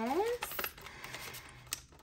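Paper banknotes rustling as fingers slide them into a clear plastic envelope, with a couple of light clicks.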